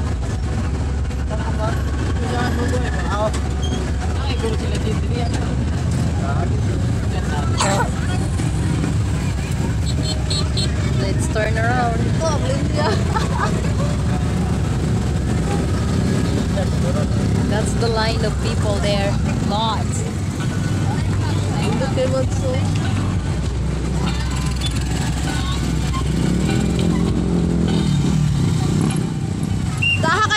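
Street traffic of motorcycles and cars running and passing, a steady low engine rumble under crowd chatter. Near the end one engine's pitch rises and falls as it goes by.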